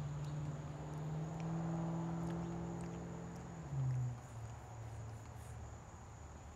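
A man's long closed-mouth hum, a thinking 'mmm' held for about three and a half seconds, then dropping to a lower, short 'hm' and fading out, mid-way through weighing his verdict. A steady high-pitched insect drone runs behind it.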